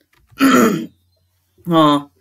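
A man clearing his throat once, a short rough sound lasting about half a second.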